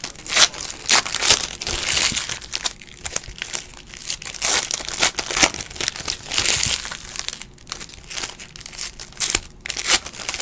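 Foil trading-card pack wrappers crinkling and tearing in the hands as packs are ripped open, in a string of short, irregular bursts.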